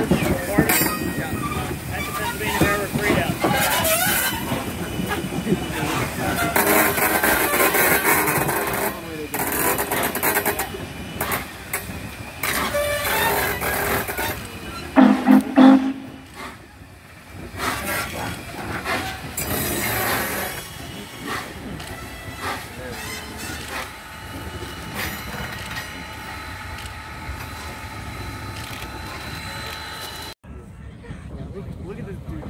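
Norfolk & Western J-class 4-8-4 steam locomotive No. 611 working slowly, with the clank of its side rods and the beat of its exhaust. A brief loud low tone comes about fifteen seconds in.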